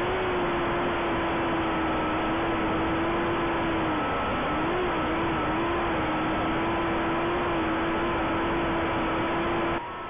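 JJRC H6C micro quadcopter's small motors and propellers whining steadily in flight, recorded by its own onboard camera microphone, over a steady hiss of prop wash. The pitch dips and wobbles about four seconds in as the throttle changes, then holds steady again; the sound cuts off abruptly just before the end.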